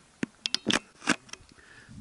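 Footsteps on loose stony ground: about six sharp clicks and scrapes of stones underfoot, spread over the first second and a half.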